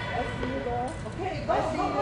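Several indistinct voices calling out and talking over one another in a large indoor hall, with a louder call about one and a half seconds in.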